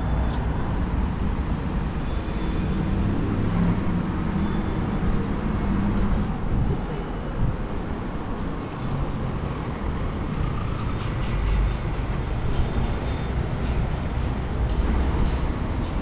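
Steady road traffic on a city street: cars passing, with engine and tyre noise.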